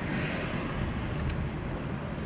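Steady road and engine noise of a moving car heard from inside the cabin, with one faint click partway through.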